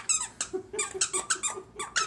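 A dog's plush squeaky toy squeaking over and over as the small dog bites and chews it, short sharp squeaks about five a second.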